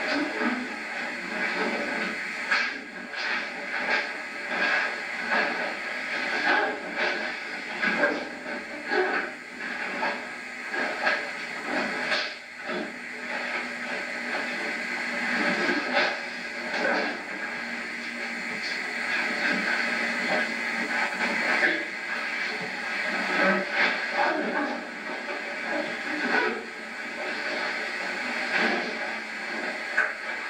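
Indistinct, muffled voices over a steady hiss, with scattered short knocks.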